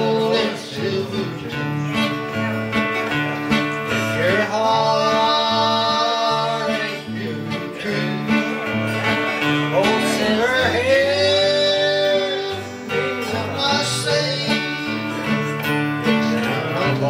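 Small country band playing an instrumental passage: strummed guitars over a bass line that steps between a few low notes, with a lead instrument playing long, sliding held notes.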